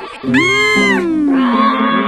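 Two drawn-out, wordless cartoon vocal cries, the first rising and then falling in pitch, over background music.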